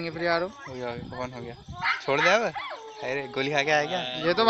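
People's voices talking and calling out, with a long rising-and-falling exclamation about two seconds in.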